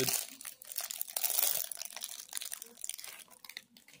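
Plastic trading-card pack wrapper crinkling in the hands, a dense run of crackles that thins out near the end.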